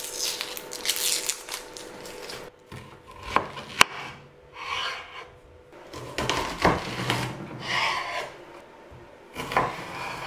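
Dry onion skin rustling and crackling as it is peeled off by hand, then a kitchen knife slicing through the peeled onion with short crunches and a few sharp knocks on a wooden cutting board.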